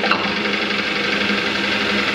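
Sewing machine running steadily, heard on an old film's soundtrack through hall speakers, with heavy hiss over it.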